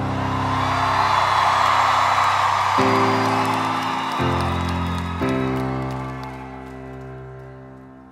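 Slow piano chords held and changed every second or two, with the audience cheering and clapping over the first half; the crowd noise fades away and leaves the piano alone near the end.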